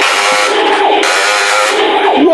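Imaginext Battle Rover toy's built-in speaker playing its electronic battle sound effects mixed with music, a busy, continuous tinny sound as the rover fires on the ship.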